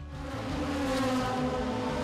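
Turismo Nacional Clase 2 race cars' engines running at a steady pitch, fading in at the start.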